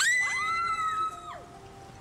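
High-pitched screaming, two voices overlapping: a shrill cry starts suddenly, a second one slides up beneath it, and both hold for about a second before falling away.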